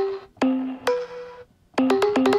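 Short plucked synth notes played on a Roland MC-101 groovebox's pads from a loaded WAV sample, 'synth pluck C4', rather than from its synth engine. Three single notes come about half a second apart, each dying away, then after a short pause a quick run of notes starts near the end.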